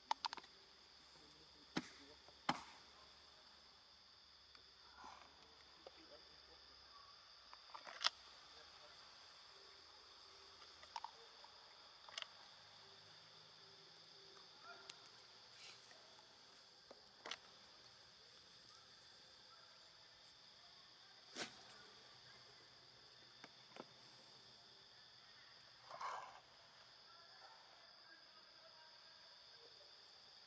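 Faint steady insect chorus with a high, even two-toned drone, broken by scattered sharp clicks a few seconds apart.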